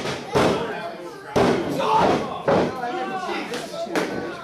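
A few sharp thuds on a wrestling ring's canvas, spread about a second apart, with voices shouting over them.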